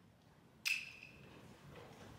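A single short metallic clink about two-thirds of a second in, ringing briefly as it fades, over faint background noise.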